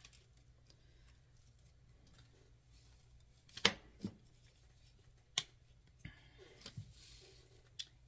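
Quiet tabletop handling of crafting tools: a few sharp clicks and taps, the loudest a little past three and a half seconds in, over a low steady hum.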